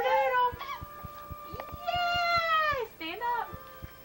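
A baby squealing and babbling in several short, high-pitched calls, the longest held almost a second about two seconds in and falling away at its end.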